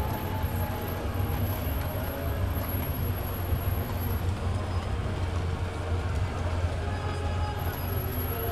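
Busy city-street noise: a steady low rumble under a faint, even hubbub of people.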